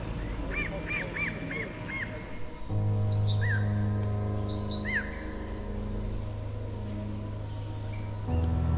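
A bird calling in a quick run of five short arched notes, then a few more single notes a second or two apart. A low, sustained music drone comes in under it a little under three seconds in and holds.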